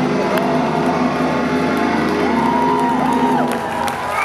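A metalcore band's final chord ringing out through the PA, with the crowd cheering and whooping over it; the held chord stops near the end.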